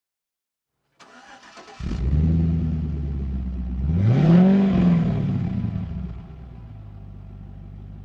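Car engine starting as an intro sound: a faint rough cranking about a second in, then it catches and runs steadily, revs once with a rising-then-falling pitch about four seconds in, and drops back to a quieter steady idle.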